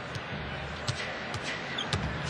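A basketball dribbled on a hardwood court, a few sharp bounces, over a steady arena crowd murmur.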